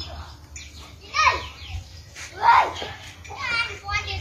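Children's voices: three short, high calls or shouts, about a second in, halfway through, and near the end, over a steady low rumble.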